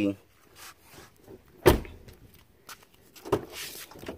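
Two sharp knocks, the first loud and a little under halfway in, a lighter one about a second and a half later, followed by a brief rustle.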